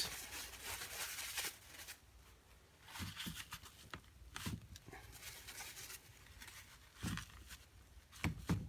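A crumpled paper towel rustling and crinkling as it is pressed and dabbed onto wet paint to blot out clouds: a longer rustle in the first couple of seconds, then a few soft dabs.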